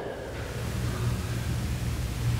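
A low steady hum with a faint hiss in a pause between spoken phrases: the room tone of a sanctuary picked up by a headset microphone.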